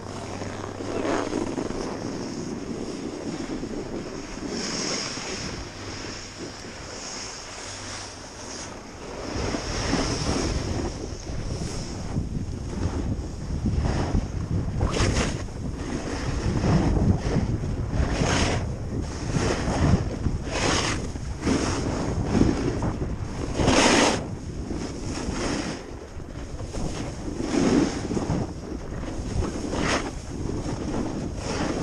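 Wind on the camera microphone and a snowboard sliding over packed snow, quieter at first, then louder from about nine seconds in with repeated swishing surges as the board's edges scrape through turns.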